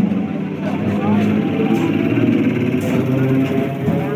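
Many people's voices mixing together on a busy suburban railway platform beside a standing electric local train, with music-like tones among them.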